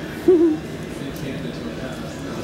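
Australian Shepherd puppy, about three and a half weeks old, giving one short wavering hoot-like whine about a quarter second in.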